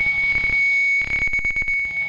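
The noise ending of a grindcore/punk track: a steady high-pitched whine held throughout, joined about a second in by a fast stutter of clicks.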